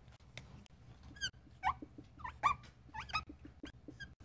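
Dry-erase marker squeaking on a whiteboard while numbers are written: several short, faint squeaks, some sliding in pitch.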